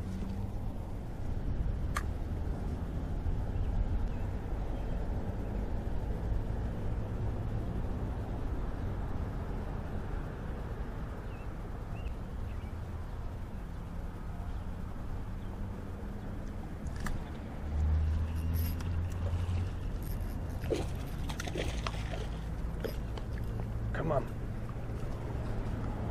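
Steady low outdoor rumble with a few brief clicks, and a louder low swell about eighteen seconds in.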